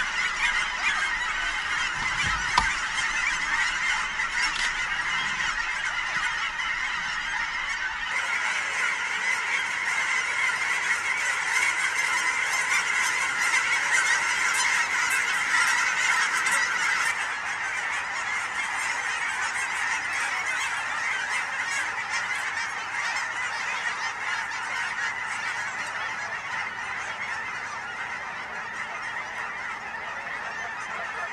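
A large flock of geese calling without pause, a dense clamour of many overlapping honks. A single thump sounds about two and a half seconds in.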